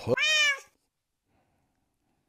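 A man's voice saying a drawn-out, high "puss?" that falls in pitch and lasts about half a second.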